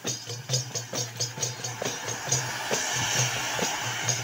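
Rhythmic percussion music with a steady beat. From about halfway in, a ground-fountain firework hisses as it sprays sparks.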